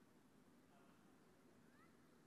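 Near silence: faint steady background hiss, with a couple of faint short rising chirps near the end.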